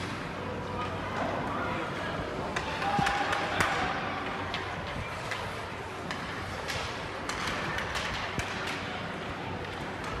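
Ice hockey game in a rink: sharp clacks of sticks and puck at scattered moments over a steady murmur of spectators' voices, growing louder about three seconds in.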